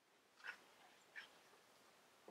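Near silence with two faint, brief paper rustles, about half a second and just over a second in, as a picture book's page is turned and the book handled.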